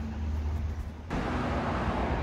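Outdoor background noise: a steady low rumble that turns suddenly louder and hissier about a second in.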